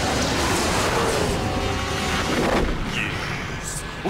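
Sci-fi spaceship sound effect: a loud, dense rushing rumble that thins out about two and a half seconds in, with the score faintly beneath it.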